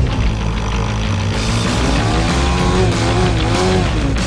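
Music with a dirt bike's engine revving up and down over it, the revving coming in about a second and a half in.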